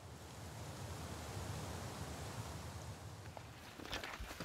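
Faint, steady woodland ambience: an even hiss of air moving through the trees, with no distinct events apart from a small tick near the end.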